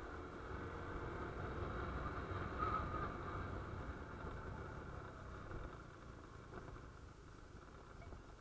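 Honda Wave 125 underbone motorcycle's small single-cylinder four-stroke engine running as it rides along, with a steady low rumble that grows quieter over the last few seconds.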